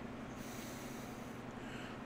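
A faint breath out through the nose, lasting about a second, over steady low room noise.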